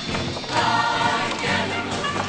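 Show choir singing with instrumental accompaniment.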